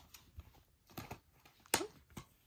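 A plastic Blu-ray case being handled: the disc pressed onto its hub and the case snapped shut. It makes a few sharp plastic clicks, the loudest about three-quarters of the way through.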